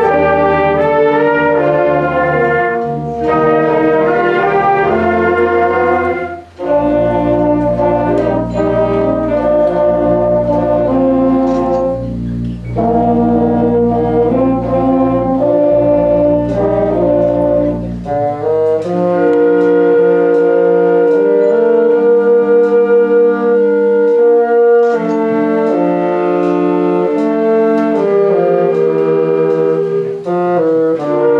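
A youth orchestra of strings, bassoons and brass playing together in sustained chords. There is a brief break about six seconds in, and the low bass notes drop out about two-thirds of the way through.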